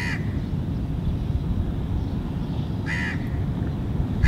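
A bird calling twice, short pitched calls at the start and about three seconds in, over a steady low background rumble.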